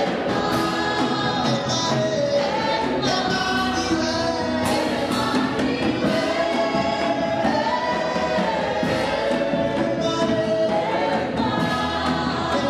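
Gospel worship singing: a group of singers, led by women on microphones, singing together in a choir-like chorus, steady and continuous.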